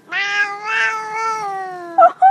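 A domestic cat's single long, drawn-out meow in reply to being asked to "say I love you", the pitch sliding slowly down toward the end.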